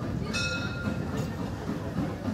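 Mecklenburgische Bäderbahn Molli narrow-gauge steam train running toward the listener along street track, with a steady low rumble. A short, high ringing warning signal from the train sounds once, about a third of a second in.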